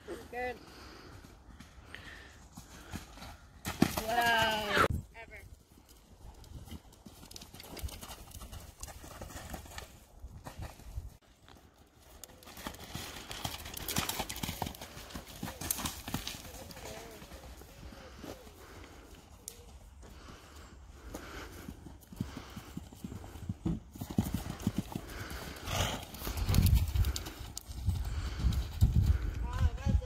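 A horse's hooves cantering and jumping over cross-country fences, with a loud drawn-out call about four seconds in and heavy low thumps near the end.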